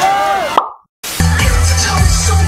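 Crowd voices and shouting fade out within the first half second, then after a brief silence music with a heavy, steady bass line starts loudly about a second in.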